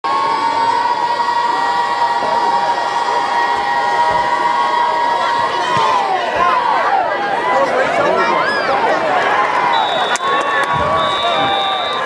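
Football crowd cheering a kickoff. A long held crowd cry gives way around the kick to many voices shouting and cheering, and a whistle sounds near the end.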